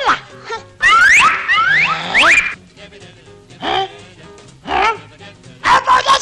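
Cartoon soundtrack: a man's gibberish cartoon voice making quick rising yelps about a second in, then two short grumbles, and a fast burst of chatter near the end, over background music.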